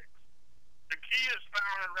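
Speech only: a voice reading aloud resumes about a second in after a short pause, over a faint low hum.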